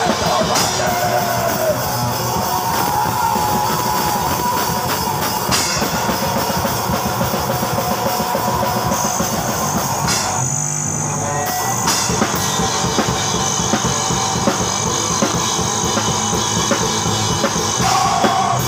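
Loud live rock band playing: drum kit with dense, rapid hits under electric guitar. Briefly, about ten seconds in, the cymbals and high end drop out before the full band comes back.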